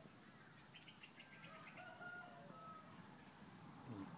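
A faint, drawn-out bird call, steady in pitch, starting about a second in and lasting a couple of seconds over an otherwise near-silent background.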